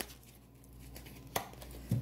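A deck of playing cards being handled and shuffled by hand: faint rustling with a single sharp click about a second and a half in, and a soft knock just before a card is held up.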